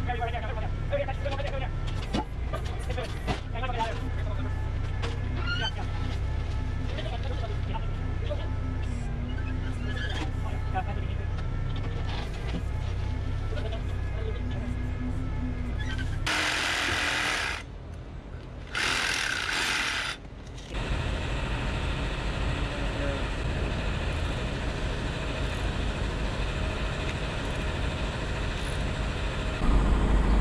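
Compact tractor's engine running steadily under load as its backhoe digs. About sixteen seconds in, two loud rushing bursts, a second or so each, as the bucket dumps loose dirt and gravel onto the pile.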